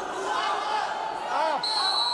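Voices of a crowd and coaches in an arena, with a shout about a second and a half in. A high steady whistle then starts and holds past the end: the referee's whistle stopping the wrestling bout.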